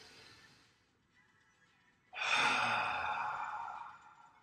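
A man's slow, deliberate deep breath. A faint inhale fades out in the first second, then a loud exhale out through the mouth starts about two seconds in and tapers off near the end.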